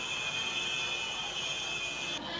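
A steady high-pitched squeal or whine, held at one pitch for the whole two seconds, over faint street noise.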